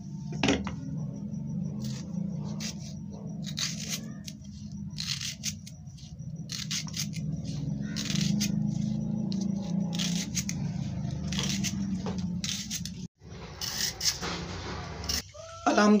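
Kitchen knife slicing through a red onion held in the hand: a string of short, crisp cuts at an uneven pace over a steady low hum.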